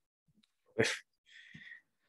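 A short, sharp breath noise from the man about a second in, then a fainter breathy hiss.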